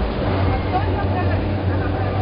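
Outdoor street ambience: a steady low engine rumble from a nearby vehicle, with scattered voices of people talking in the background.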